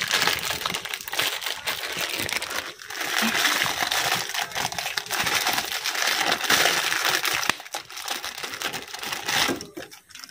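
Plastic instant-noodle packet crinkling as it is handled, with dense rustling and small clicks. It quietens about three-quarters of the way through, as the noodle block is tipped into the pan.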